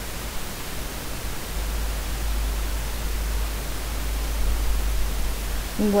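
Steady hiss from the narration microphone with a low hum underneath. The hum grows louder about a second and a half in.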